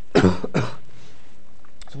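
A man coughing twice in quick succession, the first cough the louder.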